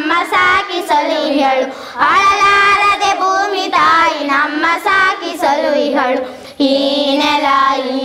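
A group of boys singing a Kannada song together, with two short breaks between lines.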